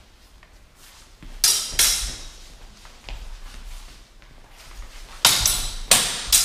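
Steel training swords clashing in a fencing bout: two loud ringing blade strikes about a second and a half in, a fainter one around three seconds, and two more loud ones near the end, in a reverberant hall.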